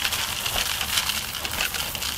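Fruity Pebbles, small crisp rice cereal flakes, pouring from a cardboard box into a bowl: a steady, dense stream of tiny ticks and rattles.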